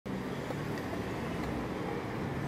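Steady low rumble of road traffic: a continuous city background.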